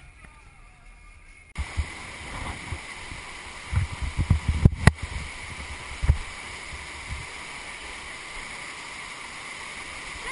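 Steady roar of a flood-swollen river's rapids, starting suddenly about a second and a half in, after a quiet car-cabin rumble. A run of low thumps and a sharp click sit over the water noise a few seconds in.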